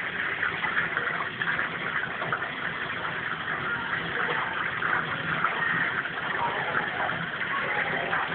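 Battered fish deep-frying in a fish-and-chip shop fryer: the hot oil sizzles steadily with a fine, dense crackle.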